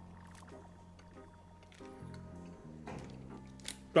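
Quiet background music with long held tones, with faint wet chewing sounds from a mouthful of soft fudge.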